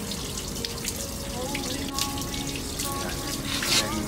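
Water running steadily from bamboo spouts into the stone basin of a shrine purification fountain, with splashing as hands are rinsed in it; a louder splash comes near the end.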